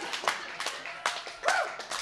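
Audience clapping, many separate claps, with some laughter, in response to a comedian's punchline.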